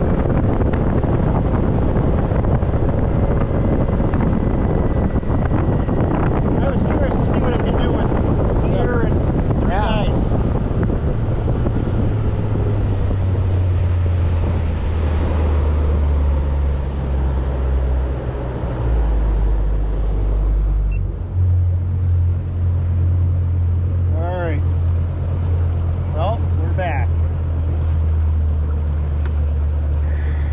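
Wind buffeting the microphone aboard an open fishing boat on choppy water: a rough hiss for the first dozen seconds, then a heavy low rumble that surges and drops in steps.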